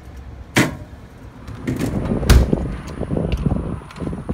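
Wind rumbling on the microphone. A sharp knock comes about half a second in and a heavier thump a little past two seconds.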